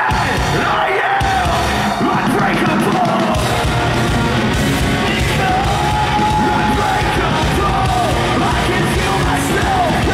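A rock band playing live, loud, with a singer singing and yelling over electric guitars, bass and drums; the voice holds one long note about halfway through.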